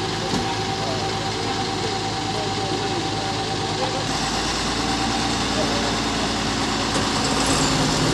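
Tata truck's diesel engine idling and pulling slowly forward, getting a little louder as it nears, with voices in the background.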